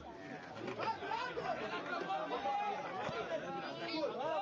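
Several people talking at once: overlapping chatter, some voices raised.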